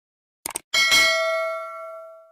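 Two quick mouse clicks, then a notification-bell ding that rings with several tones and fades out over about a second and a half: a subscribe-button sound effect.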